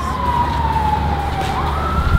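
A person whistling one long note that slides slowly down in pitch, then swoops back up near the end and holds higher, over a steady low rumble.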